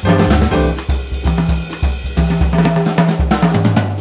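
Instrumental jazz passage led by a drum kit, with snare, bass drum, hi-hat and cymbal strokes over low held bass notes.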